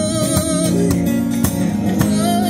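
Acoustic guitar strummed steadily through the chords of a live song, with a held sung note that ends about two thirds of a second in.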